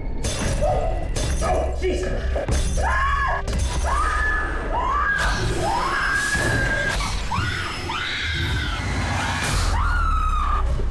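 People screaming in fright, a string of high shrieks one after another from about three seconds in until near the end, after a few sudden crashes like breaking glass, all over a low steady rumble.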